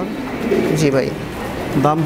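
Domestic fancy pigeon cooing, a low wavering coo, while a man says a short word.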